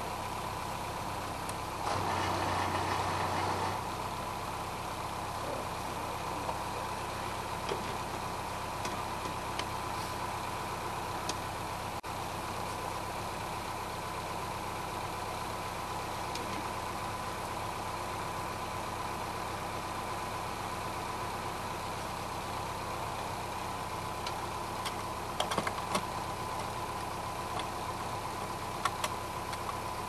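Boat engine running steadily, with a constant thin whine over its hum. There is a brief louder rush about two seconds in and a few light clicks near the end.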